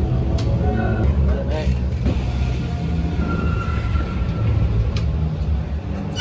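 Large indoor venue's background sound: a steady low rumble with faint distant voices and occasional light clicks.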